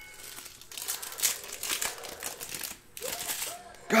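Foil wrapper of a 2019 Panini Contenders Optic Football card pack crinkling as it is torn open and pulled apart by hand. The crackling comes in two stretches, with a short break about three seconds in.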